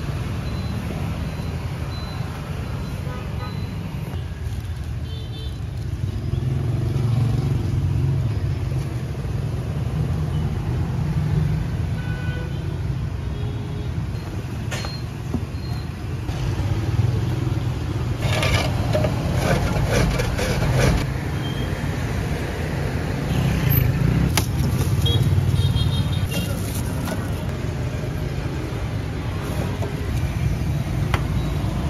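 Street traffic: motorbikes and cars passing in a steady low rumble that swells and fades. A short run of clattering knocks comes about two-thirds of the way through.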